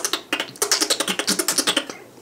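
Beatboxing mouth sounds: a fast run of sharp T and K clicks mixed with K.I.M. squeaks, about nine clicks a second. This is the TK technique combined with the K.I.M. squeak.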